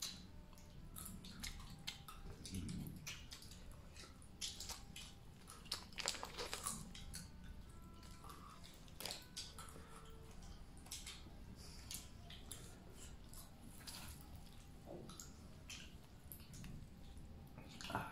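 Faint chewing and crunching of a small packaged fish snack, with scattered small clicks and crackles.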